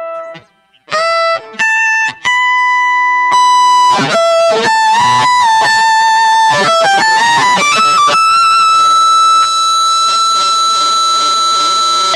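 Electric guitar played through a Keeley Octa Psi with the fuzz in its scooped mode and the octave side engaged. After a brief pause there are a few single notes, then a faster phrase, then one high note held to the end.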